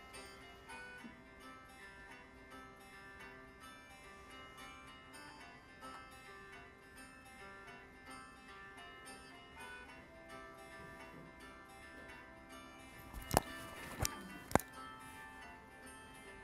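Light instrumental background music from a video soundtrack, heard through the room's speakers. Three sharp clicks a little before the end.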